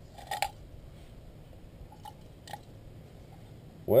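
Gloved hands working a small, heat-softened aluminum can open: a brief crunchy scrape a fraction of a second in, then two faint clicks about two seconds in.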